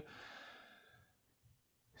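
A faint exhaled breath that fades out over the first second, then near silence.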